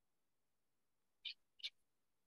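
Near silence: room tone, with two faint short ticks a little past a second in.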